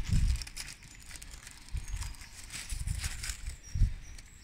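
Handling noise: a small plastic bag of fixing clips being picked up and rustled in the hands, with uneven low bumps and a sharp thump near the end.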